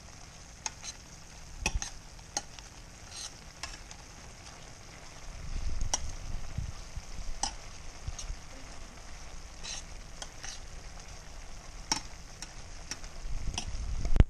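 Shrimp sizzling in garlic butter in a frying pan, a steady hiss, with scattered clicks of a utensil against the pan.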